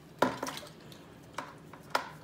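Hard knocks and clicks as a small aquarium power head pump and its hose bump against a plastic tub while the pump is set into the water. There is one sharp knock about a quarter second in, then a few lighter taps.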